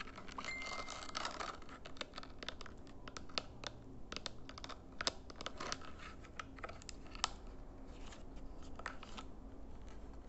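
Fingers pressing and tapping the buttons and plastic case of a small remote control for LED lights, giving a string of irregular clicks.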